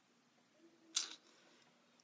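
A faint, short closed-mouth hum from a person, then one brief, sharp breath through the nose about a second in.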